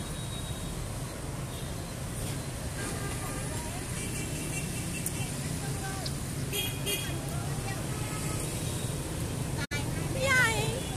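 Street traffic noise, with motorbike and scooter engines running in a steady low rumble and faint voices around. Two short horn beeps come about six and a half seconds in.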